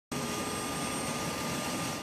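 Helicopter running nearby: a steady turbine whine with a couple of high, even tones over a constant wash of rotor and engine noise.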